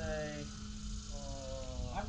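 Steady buzz of a small electric model airplane's motor, with men's voices talking quietly.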